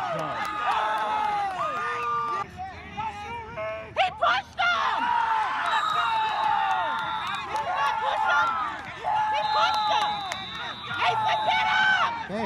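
Many overlapping voices of players and onlookers calling out and chattering across an outdoor field, none clear enough to make out, with a short lull and a sharp knock about four seconds in.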